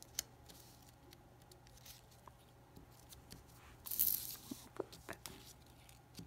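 Construction paper being handled and glued with a glue stick: a sharp click just after the start, then a brief loud rubbing scrape about four seconds in, followed by a few softer rustles and taps.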